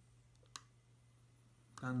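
A single sharp computer mouse click about half a second in, over a low steady hum.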